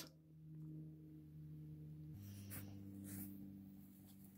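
Near silence: a faint, steady low hum that drops to a lower pitch about halfway through, with a few faint ticks near the end.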